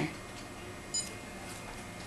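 KDC200i Bluetooth barcode scanner giving one short, high beep about a second in, its signal of a successful barcode read. Otherwise faint room tone.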